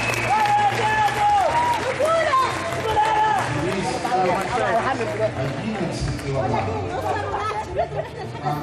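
Spectators in a hall shouting and cheering: a close voice gives long drawn-out shouts over the first two or three seconds, then several voices call and talk over one another.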